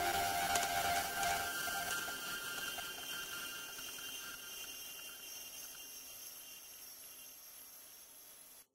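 The closing fade-out of a chillwave track: held tones and a layer of hiss slowly dying away, growing steadily fainter.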